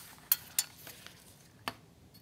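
A few light, sharp clicks as a metal ruler is shifted and set down on paper over a drawing table.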